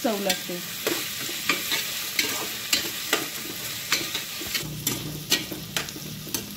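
Sliced onions and whole spices sizzling in hot oil in an aluminium pressure cooker. A metal spatula stirs them, clicking and scraping irregularly against the pot.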